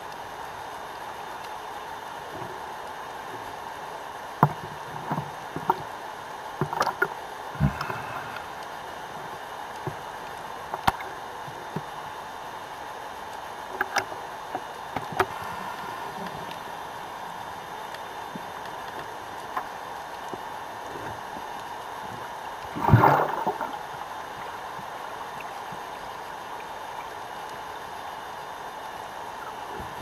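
Water sounds on a freediving dive: a steady hiss with scattered short clicks and knocks, and one louder gurgling rush lasting about a second around two-thirds of the way through.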